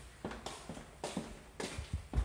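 Footsteps on a hard floor, sharp steps at about three or four a second as people walk along a hallway.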